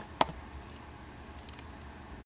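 A single sharp click about a fifth of a second in, then a few faint ticks near the end, over a low steady hum.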